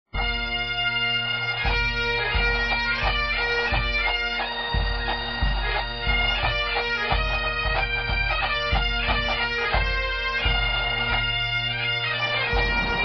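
Bagpipe music: a melody played over the pipes' steady drones, with a pulsing low accompaniment underneath. It starts abruptly at the opening.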